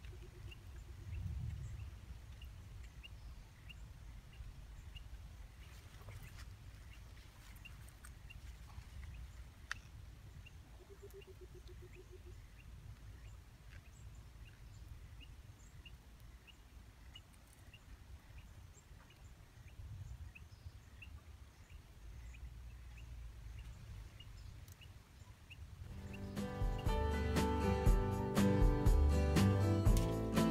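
Faint outdoor ambience with a short high chirp repeating every half second or so, and two brief low trills, one near the start and one about eleven seconds in. Plucked guitar music comes in loudly near the end.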